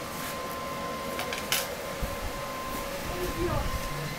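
Supermarket checkout ambience: a steady high-pitched hum, two sharp clicks a little past a second in, and a low rumble in the second half. A voice calls out near the end.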